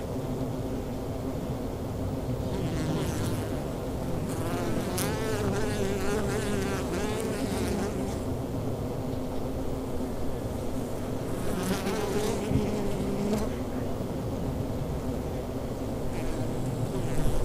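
Honeybees buzzing around their hive entrances: a steady hum of many bees. Twice, about four seconds in and again past the middle, louder buzzes waver up and down in pitch as individual bees fly close by.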